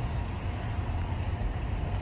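Steady low rumble with an even hiss underneath: outdoor background noise, with no distinct events.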